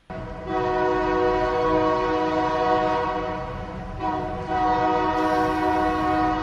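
Train horn blowing long blasts, a chord of several steady notes, with a short break about four seconds in before the next blast.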